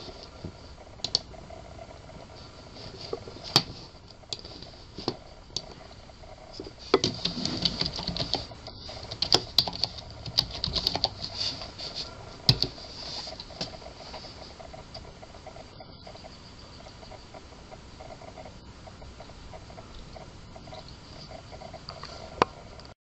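Computer keyboard typing and mouse clicks: scattered single clicks, then a busy run of key taps for several seconds around the middle, over a faint steady high-pitched tone.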